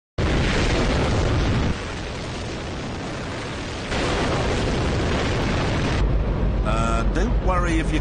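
Hydrogen-oxygen rocket engine firing on a test stand: a very loud, steady roar that drops in level at about two seconds and comes back up at about four. Near the end a man shouts over the engine's deep rumble.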